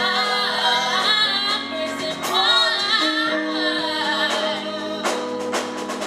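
A gospel vocal ensemble singing live into microphones, with women's voices leading, over steady held accompanying notes. A few sharp percussive hits come near the end.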